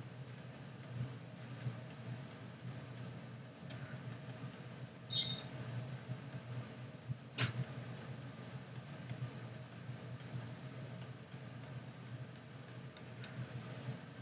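Faint, scattered clicks and taps of computer input devices at a desk during digital painting, over a low steady hum. Two louder sharp taps come about five and seven seconds in.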